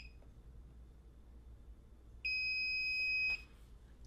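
Lockly Smart Safe's electronic beeper: a short beep as a finger is on the fingerprint sensor, then about two seconds later one long, steady high beep of about a second, signalling that the fingerprint has been enrolled.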